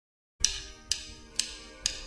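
Four quiet, evenly spaced percussive clicks, about two a second, counting in the song, with a faint sustained tone beneath them.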